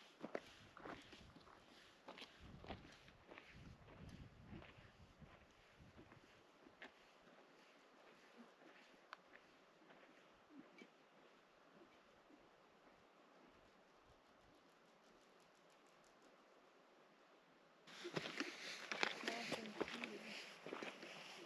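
Footsteps on a gravel trail, fading over the first few seconds as the walker moves away, then near silence. Near the end a louder stretch of rustling and clicks starts suddenly.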